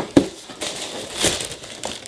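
Cardboard Yeezy 350 V2 shoebox being opened, with a sharp knock of the lid just after the start, then the tissue paper inside crinkling and rustling.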